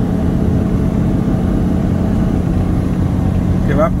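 Semi-truck engine droning steadily under load, with road and tyre noise, heard inside the cab while the loaded truck climbs a mountain grade.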